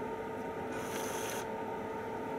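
A steady two-note electrical whine, with a brief rustling scrape lasting under a second about a second in.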